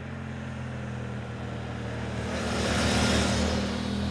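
Adventure motorcycle riding past at a steady speed, its engine note holding steady while it grows louder to a peak about three seconds in, with a rush of tyre and wind noise, then begins to fade as it moves away.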